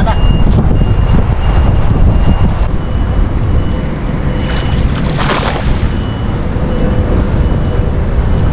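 Wind rumbling hard on the microphone throughout. A short high beep comes back at uneven intervals, and there is a brief rush of noise about five seconds in.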